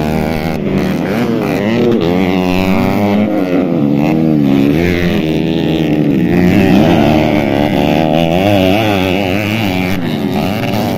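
Several motocross dirt bike engines running and revving on a dirt track, their pitch repeatedly rising and falling as the riders open and close the throttle, with more than one bike heard at once.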